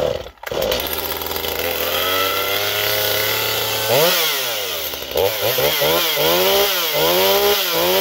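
A two-stroke Stihl chainsaw is pull-started with the choke off and catches within the first half second. It runs at idle, then is revved up and down in a string of throttle blips, rising to held higher revs near the end.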